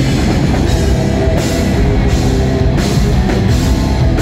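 A post-hardcore rock band playing live at full volume, drum kit and guitars together, with cymbal crashes about every three-quarters of a second from about a second and a half in.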